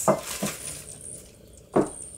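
A plastic bag and cup being handled: a few short crinkles and knocks, the sharpest one near the end.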